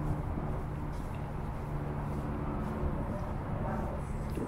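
Steady low hum of distant road traffic, with faint soft footsteps on sand coming through at a regular pace.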